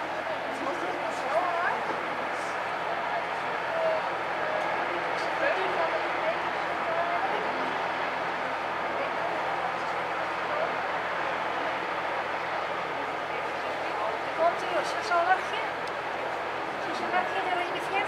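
Indistinct chatter of many voices overlapping in a steady murmur, with no single clear speaker. A few louder voice fragments stand out near the end.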